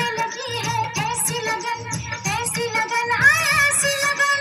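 Music: an Indian film-style song with a singing voice over a steady drum beat.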